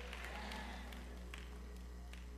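A lull in a church hall: a steady low hum under faint room noise from the congregation, with a faint tap about one and a half seconds in.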